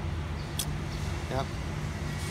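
Steady low background rumble of outdoor ambience, of the kind distant road traffic makes, with a brief click about half a second in and a short vocal sound a little after the middle.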